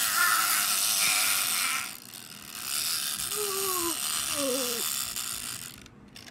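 Plastic wind-up bunny toy's clockwork mechanism whirring and rattling, in two stretches with a short break about two seconds in.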